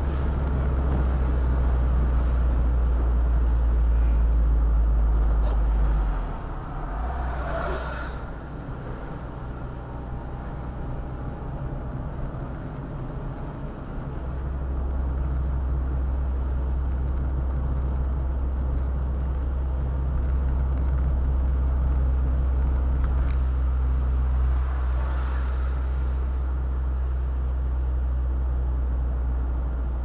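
Roadster driving on an open road: a steady low engine and road drone. It eases off about six seconds in and picks up again about fourteen seconds in. A brief rushing sound comes about eight seconds in.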